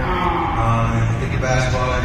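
A man talking into a handheld microphone, amplified over a loudspeaker system and picked up from the audience by a phone, the words hard to make out, over a steady low hum.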